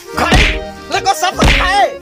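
Two loud whack-like hits about a second apart, each dropping into a deep low thud, over background music and speech.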